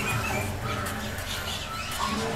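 A felt-tip pen scratching on paper as a few letters are written, over a low background hum with a few faint short high tones.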